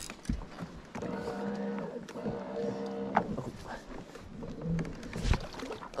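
Steady electric hum of a boat's trolling motor running for about two seconds, then briefly again near the end, with a few sharp knocks on the aluminium boat.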